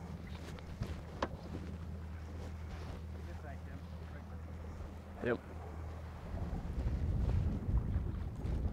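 Outboard motor running steadily at low speed, a low even hum, with wind buffeting the microphone and getting louder from about six seconds in.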